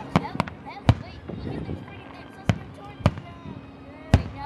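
Aerial fireworks shells bursting overhead: about five sharp bangs at uneven intervals, three close together in the first second, then two more a little past halfway. Crowd voices chatter between the bangs.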